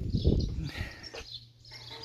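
Outdoor yard ambience with birds chirping. There is rustling handling noise in the first second, then it goes quieter with a faint steady low hum. The lawn mower is not running.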